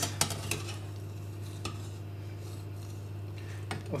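Slotted metal turner knocking and scraping against a stainless steel saucepan while lifting out a boiled seitan loaf: a few light clicks in the first half-second, another under two seconds in and one near the end. A steady low hum runs underneath.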